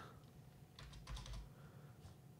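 Faint computer keyboard keystrokes, a few quick clicks about a second in.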